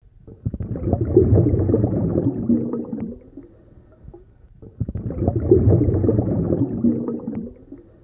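Bubbling, gurgling water in two long swells, each about three and a half seconds, with a short lull between them.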